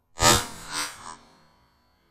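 Two shots from an Armsan 612S semi-automatic shotgun about half a second apart, the second weaker, fired at ducks flying overhead. Both die away within about a second and a half.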